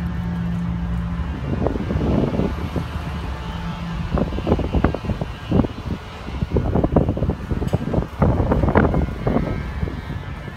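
A low steady hum in the first second or so, then a long run of irregular knocks and thumps, loudest near the end.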